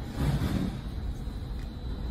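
A low, steady rumble of vehicle noise, with a brief low voice-like murmur a quarter second in.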